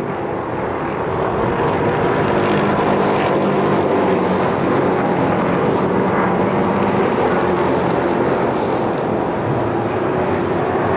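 An ACT late model stock car's V8 engine running at speed around a paved oval, a steady drone whose pitch shifts about four seconds in.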